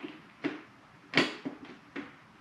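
A few short, sharp clicks and knocks as a dark smoke shield is fitted to a Bell Bullitt Carbon motorcycle helmet, the loudest a little over a second in.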